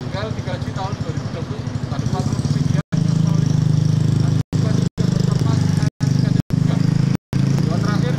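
A voice talking under a steady low rumble like an engine running close by; the rumble grows much louder about three seconds in. The sound cuts out completely for split seconds several times.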